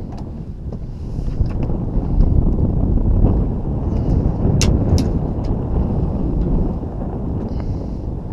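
Wind buffeting the microphone, a loud rumble that swells through the middle, with a couple of sharp clicks about halfway through.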